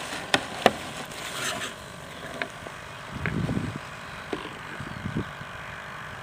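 Handling noise on a camera mounted to an RC model glider as the model is moved over grass: a few sharp knocks and clicks, with a brief low rumble about three seconds in, over a steady outdoor hiss.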